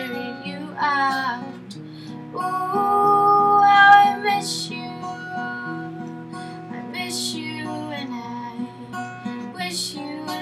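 Acoustic guitar accompaniment with a woman singing over it; a long held sung note swells to the loudest point about four seconds in.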